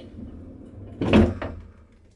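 Small passenger lift running with a low, steady hum and a single clunk about a second in. The car works now that weight is on the weight switch in the middle of its floor.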